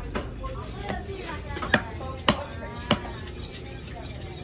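Large knife chopping a tuna loin into cubes on a wooden chopping block: five sharp strikes, the three loudest in the second half, about half a second apart.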